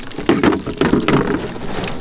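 Water pattering and splashing as it drains from a bullet-holed plastic water jug that is being lifted and handled, with small knocks of the plastic.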